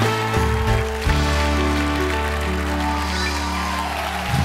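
Talk-show house band playing walk-on music: held chords over sustained bass notes, shifting to new chords about a second in.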